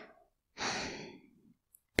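A woman's soft, breathy sigh about half a second in, trailing off over about a second.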